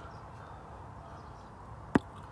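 Low steady background noise, with one sharp click just before the end.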